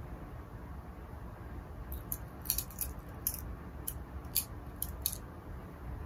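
Cotton fabric rustling in a handful of short crisp crackles, clustered in the middle few seconds, as the layers of a romper leg are handled and worked into place; a faint steady low hum underneath.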